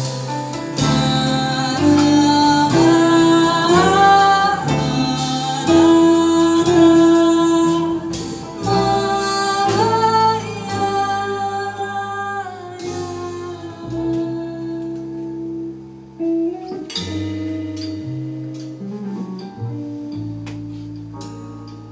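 Live jazz-inflected band music: a woman singing over guitar, upright double bass and drum kit. The voice drops out near the end, leaving the band playing.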